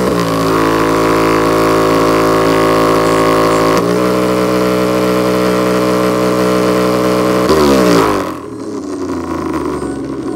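Portable speaker with a DIY passive radiator playing a subwoofer bass-test track loudly: stacks of steady, buzzy, engine-like low tones that glide down in pitch near the start, about four seconds in and again about seven and a half seconds in. The level drops suddenly a little after eight seconds.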